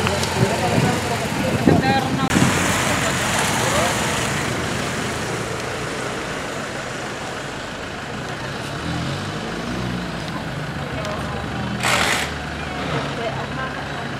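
Street traffic noise with voices in the background, and Honda Tornado police motorcycles' single-cylinder engines running as the bikes pull away. There is a short burst of hiss near the end.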